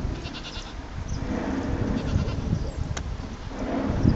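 A goat-like bleating call, pulsed and wavering, near the start and again about two seconds in, over a steady low rumble of wind on the microphone.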